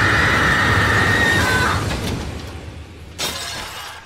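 Pots, pans and dishes crashing and shattering in a loud continuous clatter, with a high steady tone over it that stops about two seconds in. The clatter dies down, one last sharp crash comes a little after three seconds, and the sound falls away.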